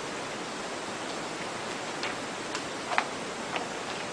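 Steady hiss of background noise, with a few faint, short light clicks about two to three and a half seconds in.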